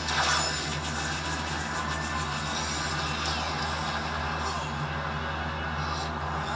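Television soundtrack played through a TV speaker: a whirring sci-fi weapon sound effect, a blaster-bow powering up, over dramatic background music. The effect comes in loudly at the start.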